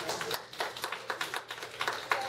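Scattered audience clapping: many sharp, uneven claps from a seated crowd.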